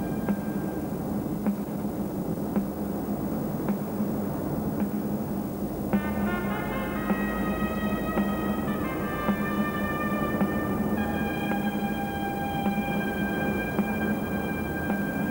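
Closing music: sustained chords over a steady low drone, with a soft tick about once a second; a cluster of high held notes comes in about six seconds in and shifts again near the eleventh second.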